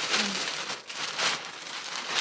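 Plastic packaging crinkling and rustling in uneven bursts as it is handled and pulled open.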